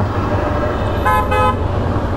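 Two short toots of a vehicle horn, back to back about a second in, over the steady low rumble of a Yamaha MT-15 motorcycle riding in traffic.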